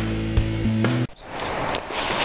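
Instrumental intro music with held chords and a steady beat of about two hits a second. It cuts off abruptly about a second in, and a steady outdoor rushing noise with a few light clicks follows.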